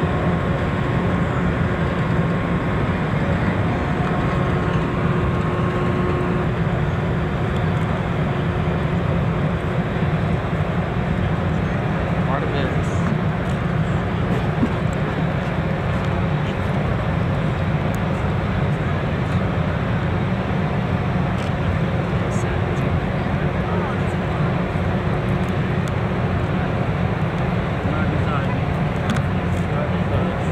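Steady low rumbling outdoor background noise with no sudden events, and faint steady hums in the first few seconds.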